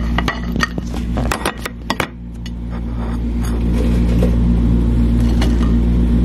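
Kitchen tongs clicking against a ceramic plate as French fries are set down, with a handful of light clinks over the first two seconds. After that only a steady low background hum remains.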